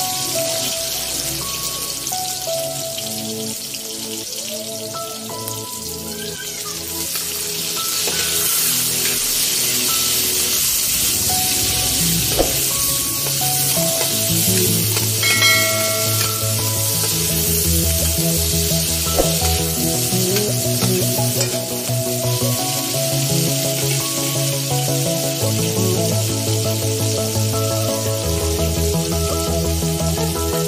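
Oil sizzling steadily in a wok as chopped onion, garlic and tomato sauté, with background music over it.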